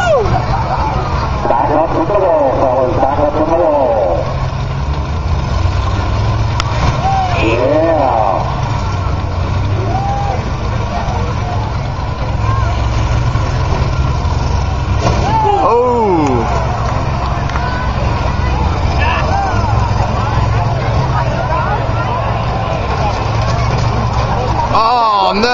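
Combine harvester engines running in a demolition derby arena: a loud, steady low rumble, with voices heard over it now and then.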